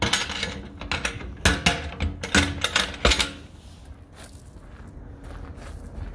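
Metal clicks and clanks of a cam-lock latch being worked on a diamond-plate truck compartment door: a quick run of sharp strikes over the first three seconds or so, then they stop.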